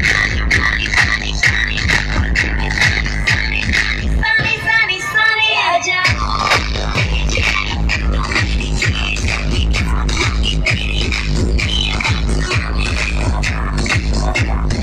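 Loud electronic dance music played through a DJ sound system's speaker stacks, driven by a heavy, steady bass beat. About four seconds in, the bass drops out for about two seconds while a higher melody plays on its own, then the beat comes back in.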